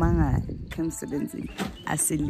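Farm animals bleating, mixed with people's voices talking.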